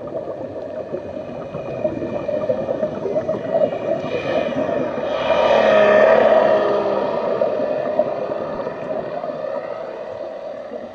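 Underwater sound: a steady, humming drone with a gurgling texture, swelling louder for about two seconds a little past the middle and then easing off.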